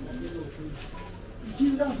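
A pigeon cooing softly under quiet voices, with a man's word near the end.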